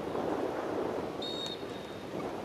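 Steady open-air background noise with wind on the microphone, and a short high-pitched whistle-like tone a little over a second in.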